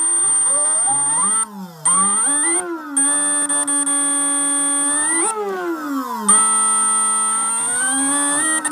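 Lehner 2260 brushless motor driven by an MGM speed controller, whining as the throttle is raised and eased: the pitch glides up and down, drops out briefly about two seconds in, then holds steady for stretches between glides. A constant high-pitched whistle runs underneath.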